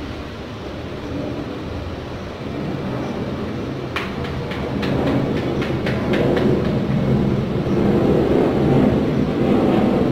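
A steady low rumble that grows louder in the second half, with a run of sharp clicks and scrapes about four to six seconds in as a small hand tool works soil in a metal tray.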